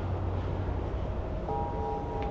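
Ship's bell tapped lightly about one and a half seconds in, then ringing on softly with a few clear, steady tones over a low background rumble.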